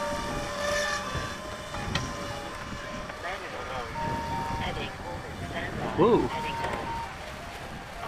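Electric RC seaplane's brushless motor and three-blade propeller at high throttle, a steady whine that fades about a second in as the plane climbs away.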